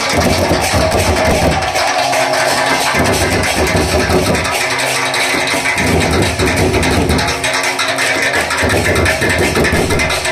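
Loud, continuous live folk music from a drum and cymbal band, with dense drumming throughout. Its low drum part swells and falls back in a pattern that repeats about every two seconds.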